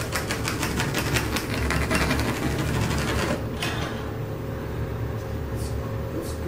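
Pencil scratching along a level on a textured drywall wall, marking a cut-out outline: a rapid, even scratching that stops about three and a half seconds in.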